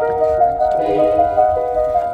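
Background music: a melody of held, steady notes with no drum beat.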